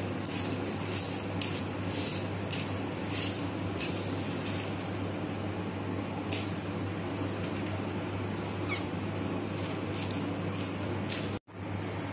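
Grated raw potato being squeezed by hand to press the water out: short, irregular wet squishes, most of them in the first few seconds, over a steady low hum.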